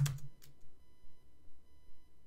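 A few isolated computer keyboard keystrokes, the first a sharp click and the next one fainter about half a second later, over quiet room tone.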